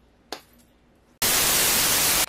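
Loud TV-static hiss, a white-noise transition effect, that starts suddenly a little past halfway and lasts about a second.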